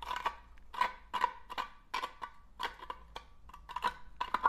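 A screw tip scraping and crunching against the corroded tin-plate end of a can, working at a hole that has rusted through it. It sounds as a string of short, irregular metallic scrapes, a few a second.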